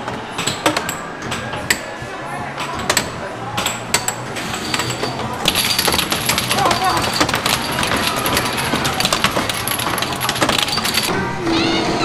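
Plastic air hockey pucks clacking irregularly against the mallets and table rails in rapid play with several pucks at once, over the din of an arcade. A steadier hiss and high tone join about halfway through.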